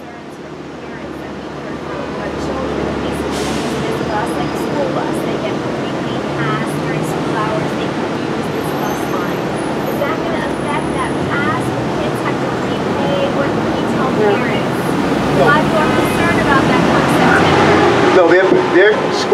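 Loud street traffic noise from heavy vehicles on a busy city avenue, building up over the first two seconds and staying loud, with voices talking faintly underneath.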